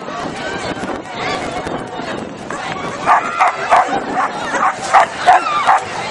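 A dog barking at a flyball race, a quick run of about six short, sharp barks in the second half, over general crowd chatter.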